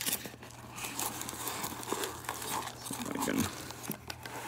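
Rustling and scraping of foam packing pieces and foil card packs being dug out of a cardboard box by hand, with irregular small clicks and knocks.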